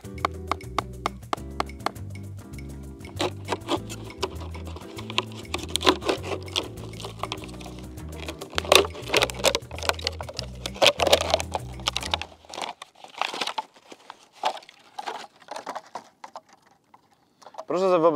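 Background music with a steady beat over sharp clicks and crackles of knife work. The music stops about two-thirds of the way through, leaving the crinkling and crackling of a thin plastic bottle being cut into a strip with a knife blade.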